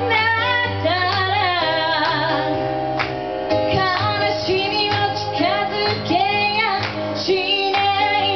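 A woman singing live into a microphone, accompanied by a Roland electric keyboard. She holds notes with vibrato over sustained keyboard chords and bass notes.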